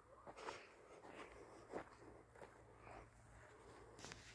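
Near silence, with faint soft footsteps on loose tilled soil, roughly one step every half second or so.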